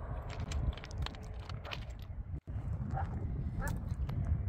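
Footsteps crunching on gravel and track ballast, with wind rumbling on the microphone; the sound cuts out for an instant about two and a half seconds in.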